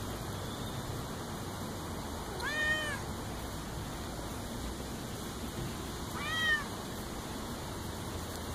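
A black-and-white domestic cat meowing twice, a few seconds apart; each meow lasts about half a second and rises then falls in pitch.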